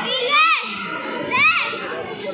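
Children in a crowd of spectators shouting and chattering, with two short high-pitched squeals, one about half a second in and one about a second and a half in.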